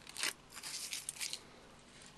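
Aluminium foil wrapped around a circuit board being crinkled and peeled back by hand: a few short crackling rustles in the first second and a half, then quieter.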